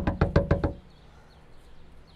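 Knuckles rapping quickly on a glass-paned door, about half a dozen sharp knocks in under a second, then stopping.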